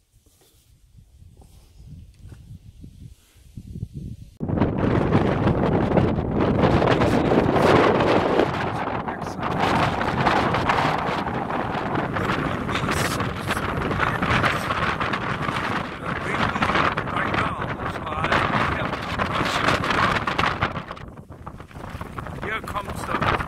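Strong wind buffeting the microphone, an irregular, gusting rush that starts suddenly about four seconds in after a quieter start.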